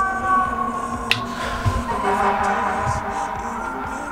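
Fire truck siren sounding in long held tones whose pitch sinks slowly, with a single sharp click about a second in.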